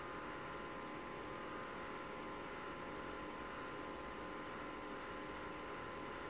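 Fiberglass cleaning pen scrubbing the legs of an EEPROM chip: faint scratchy strokes, about three a second, to clear dirt off the pins. A steady low electrical hum runs underneath.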